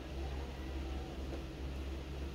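A steady low hum with a faint even hiss, with no distinct sounds standing out.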